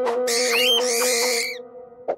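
A long, steady blast on a curved animal horn, one held note, with shrill squawking cries over it. It cuts off about a second and a half in.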